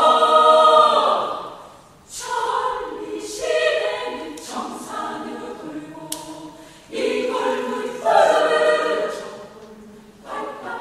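Women's choir singing in several parts, in phrases that swell and fade: a loud held chord dies away about two seconds in, new phrases enter, swell again about seven seconds in, and fade near the end.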